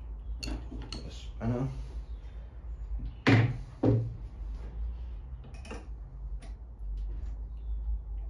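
Handling knocks and clicks of a wooden air-rifle stock and metal action parts being moved in a gun stand, with two louder knocks in the middle.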